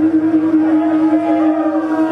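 A single steady held tone, with crowd chatter behind it.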